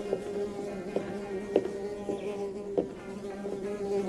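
A steady buzzing drone held at one slightly wavering pitch, with a few light clicks, the sharpest about one and a half seconds in.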